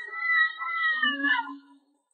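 A cat's meow: one drawn-out call lasting about a second and a half, dropping in pitch as it ends.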